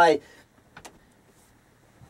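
A man's voice trails off, then a near-quiet room with two short, light clicks a little under a second in as a laptop is moved off his lap.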